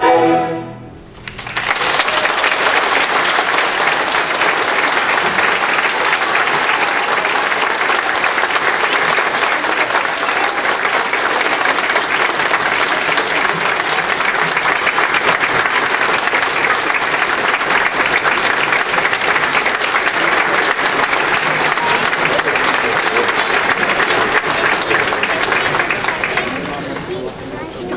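A student orchestra's closing chord dies away about a second in. Then a large audience applauds steadily and loudly for the rest of the time.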